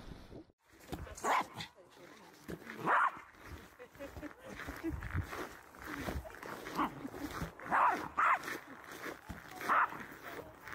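A small dog barking in short, sharp barks spaced a second or two apart, with voices in the background.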